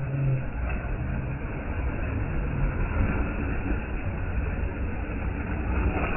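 Small waves washing over a sloping shore, with a steady low rumble of wind on the microphone.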